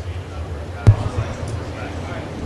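A steady low electrical hum from the sound system, broken by a single sharp thump about a second in. The thump sounds like a bump through the live microphone.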